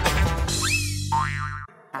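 Short cartoonish musical sting for a title card: a sudden hit, then a held chord with a whistle-like tone gliding up and back down. It cuts off suddenly shortly before the end.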